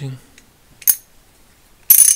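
A single sharp metallic click about a second in, then near the end a loud burst of rapid, ringing metallic clicks from the vintage Bonney A701 half-inch drive ratchet. Its freshly reassembled double-pawl mechanism is being worked in the head, and it switches as it should.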